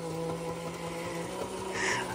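The small battery-powered electric motor and gearing of a 1950s W Toys Japan Fishing Bears Bank tin toy running with a steady hum as the bear's fishing rod works.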